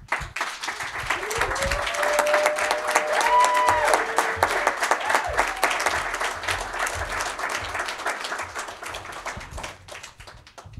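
Audience applause, swelling over the first couple of seconds and thinning out toward the end.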